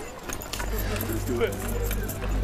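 Film soundtrack: indistinct voices with small high clicks and jingles, over a low steady hum that comes in about half a second in.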